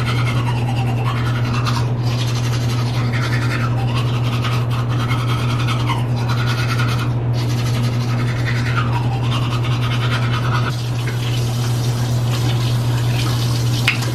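Toothbrush scrubbing teeth in irregular strokes, over a steady low hum.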